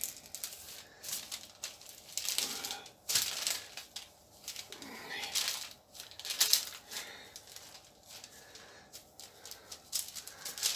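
Dough kneaded by gloved hands on a paper-covered work surface, the paper crinkling and rustling in irregular bursts with each push and fold.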